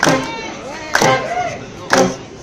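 Live rock band playing: a heavy drum hit about once a second, with a sung voice sliding up and down in pitch between the hits.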